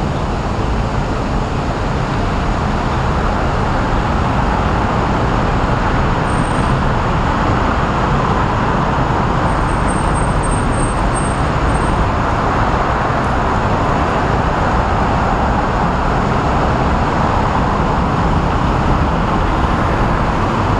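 Continuous city road-traffic noise, an even wash of sound with no single vehicle standing out.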